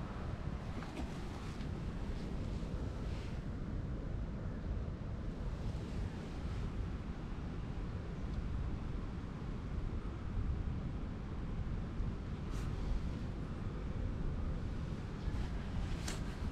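Wind buffeting the microphone outdoors: a steady low rumble with a few faint rustles.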